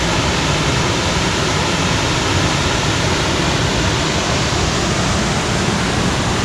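Steady rushing roar of a waterfall cascading over rock ledges, with the rapids below it, an unbroken wash of falling water.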